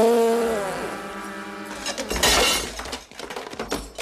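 A sudden loud pitched sound at the start that slides down in pitch, then about two seconds in a crash of something breaking, with a few smaller knocks after it.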